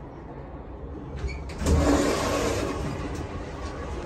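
Mall elevator machinery starting up: a click, then a surge of motor rumble about a second and a half in that settles into a steady run.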